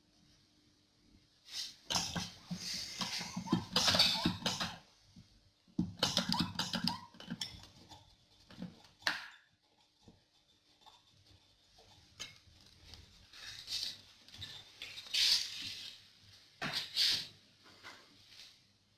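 Irregular bursts of scraping, rustling and clicking from hands handling test equipment on a pressure-calibration bench, over a faint steady hum.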